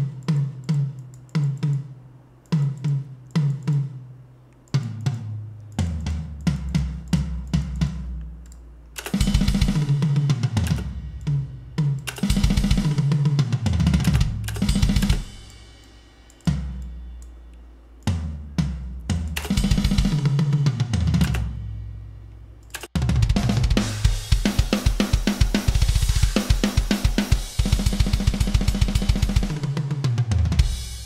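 Programmed MIDI rock drum kit playing back from sampled kick, snare, toms and cymbals, in several short passes that stop and restart. The passes include a fill that runs down the toms, whose pitch steps lower, ending on the floor tom. The last and loudest pass, near the end, is thick with cymbal wash.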